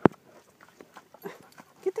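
A sharp knock right at the start, then scattered soft steps and rustles from a Weimaraner moving over a muddy bank.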